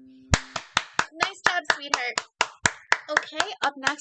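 Hand clapping over a video call: steady claps, about four a second, starting just after the last piano chord is cut off, with a voice speaking between the claps.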